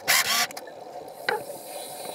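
Scuba regulator breathing heard underwater: a short, sharp hiss near the start, then quieter, with a single click a little past the middle.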